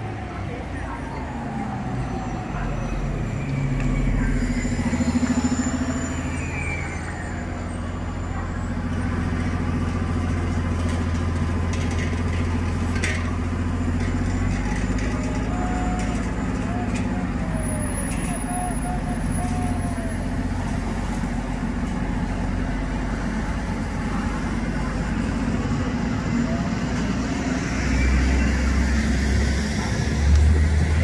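Orion VII city bus running at low speed in street traffic, a steady low drone that swells about four to six seconds in and again near the end.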